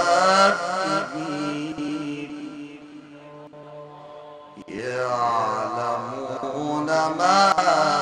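An Egyptian qari reciting the Quran in a melodic, ornamented tajweed style. A long phrase fades to a quiet held note, then a new phrase begins just past halfway with a rising, ornamented line that grows louder near the end.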